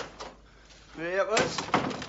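A door knocking and clattering in a wooden hut, with a man's short vocal sound, a call or exclamation, about a second in.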